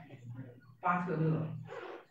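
A person's voice: one drawn-out, wordless vocal sound lasting about a second, starting a little under a second in.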